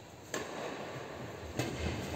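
Two sharp badminton racket strikes on a shuttlecock, about a second and a quarter apart, each ringing on in the echo of a large sports hall.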